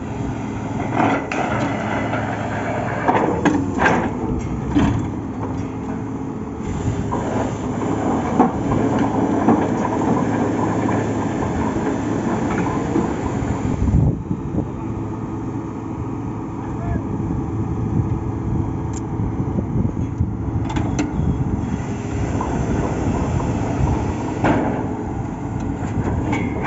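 Truck-mounted borewell drilling rig's engine running steadily, with intermittent metallic clanks from the drill rods and tools. The loudest is a sharp knock about 14 seconds in.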